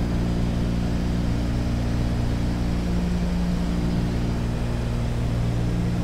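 Douglas DC-3's two radial piston engines and propellers running at steady approach power, an even drone that holds without change.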